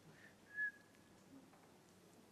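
A single short high-pitched squeak about half a second in, trailing off quickly, over a quiet room.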